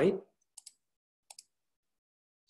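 Two quick pairs of faint clicks from a computer mouse, the second pair about three-quarters of a second after the first.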